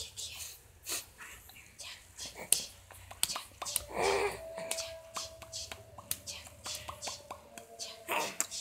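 A toddler's short babbling vocalization about four seconds in, amid breathy, whispery mouth sounds and scattered soft clicks.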